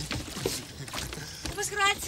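A person's voice speaking, starting about three-quarters of the way through, after a short, quieter stretch of faint background noise with a few light knocks.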